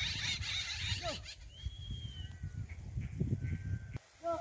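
Faint outdoor animal calls: a short hiss at first, then a brief falling call about a second in, and a few thin, high whistling notes.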